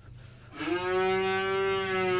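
A calf moos once: one long call at a steady pitch, starting about half a second in.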